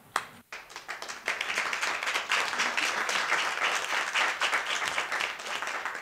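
Audience applauding: a few scattered claps at first, swelling to full applause about a second in and holding steady, then dying away at the end.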